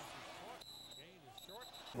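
Faint game-broadcast background of crowd and distant voices, with a high, steady whistle tone sounding twice: a referee's whistle blown to end the play.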